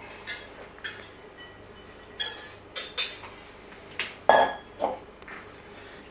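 A ceramic bowl clinking against a glass mixing bowl and then being set down on the counter, with a wire whisk picked up: a series of about eight short, light clinks and knocks.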